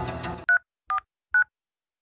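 Background music cuts off about half a second in, then three short two-tone keypad beeps about half a second apart, as a number is dialled on a smartphone.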